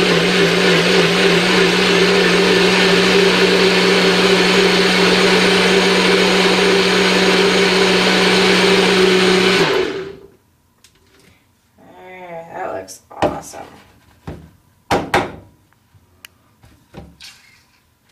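NutriBullet personal blender running steadily, blending fruit and water into a smoothie, then cutting off abruptly about ten seconds in. A few clicks and knocks follow as the blender cup is lifted off the motor base.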